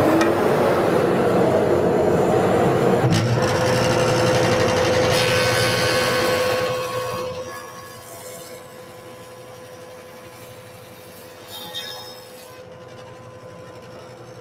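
Jointer running at full speed, its cutterhead cutting a rabbet along the edge of a pine board for about the first seven seconds. It then runs unloaded, much quieter, with a steady hum.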